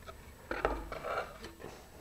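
Faint handling noise: a few light knocks and a soft rustle as a fiberglass rocket body tube is lifted and turned over on a table by gloved hands, mostly between half a second and a second and a half in.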